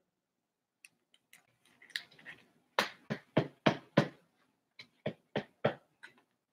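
A few light clicks and a brief rustle, then two runs of sharp knocks on a hard surface, five and then four, at about three a second.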